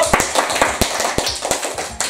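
A small group of people clapping their hands: a quick, uneven patter of claps that tails off toward the end.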